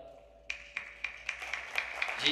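Audience clapping that starts about half a second in, with sharp individual claps at roughly four a second over a wash of applause.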